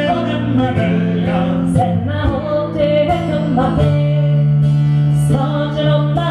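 Live folk song: a woman singing over plucked long-necked strings in a bouzouki style, with long held low notes underneath.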